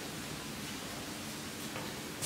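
Steady room noise: an even hiss with a faint low hum underneath, and no distinct events.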